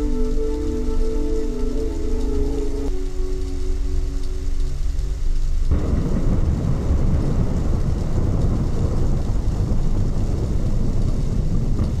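Ambient soundtrack: a held, sustained chord over a low rumble, changing once about three seconds in. Midway it cuts off abruptly and a dense rumbling noise like heavy rain and thunder takes over.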